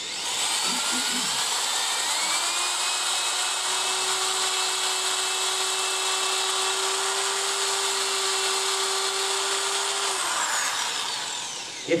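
Electric right-angle drill with a sanding pad, power-sanding a workpiece that is spinning on a wood lathe. Its motor whine rises in pitch as it spins up over the first couple of seconds and holds steady, then winds down about ten seconds in.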